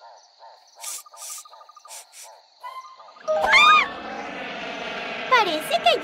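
Cartoon jungle soundtrack: a quiet stretch of faint repeated chirping calls, about four a second, over a thin steady high tone. About three seconds in, a loud swooping cry rises steeply and falls, and background music with voice-like swoops takes over.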